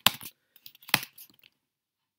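Two sharp clicks about a second apart, with a few faint ticks between them, from hand operation of a computer's input devices.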